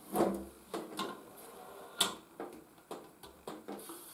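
Side cover of a Parkside PFDS 120 A2 flux-cored welder being unlatched and swung open by hand: a series of light knocks and clicks, the sharpest about two seconds in.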